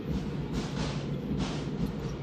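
Indoor arena crowd noise, with drums beating in the stands.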